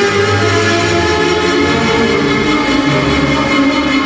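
Instrumental program music for a figure skating free skate, with long held notes.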